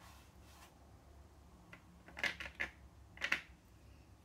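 Large watercolor brush worked over damp watercolor paper, spreading paint: faint at first, then a short cluster of quick brushing strokes about two seconds in and another just after three seconds.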